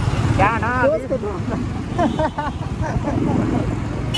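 Motorcycle engine running steadily in slow city traffic, with a person's voice talking over it shortly after the start and again around halfway.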